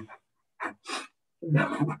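Breathy laughter: two short puffs of breath about a third of a second apart, then a voiced laugh near the end.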